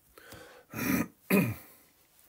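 A person clearing their throat, in two short bursts about a second in.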